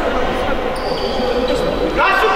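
A handball being bounced on the sports-hall floor, a few separate bounces, under overlapping voices in the hall.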